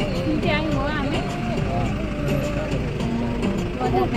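A voice, its pitch gliding up and down, over the steady low rumble of a moving vehicle.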